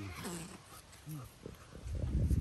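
Young jaguars play-fighting, with two short calls that fall in pitch, one near the start and one just past a second in.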